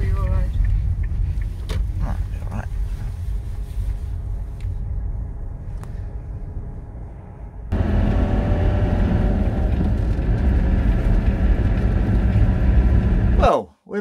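Road noise inside a moving car, a steady low rumble that slowly eases off. About eight seconds in it cuts suddenly to a louder engine drone heard from the motorhome's cab, a steady hum of several tones over the rumble.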